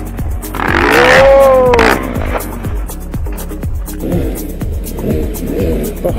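Background music with a steady beat. About a second in, a loud pitched sound rises and falls over about a second.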